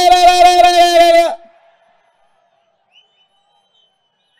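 A man's voice through a microphone holding one long drawn-out call at a steady pitch, ending abruptly about a second and a half in. A faint thin high tone follows.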